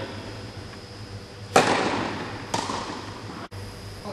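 A tennis ball struck hard by a racket, a sharp loud pop echoing through an indoor hall. A fainter second ball impact follows about a second later.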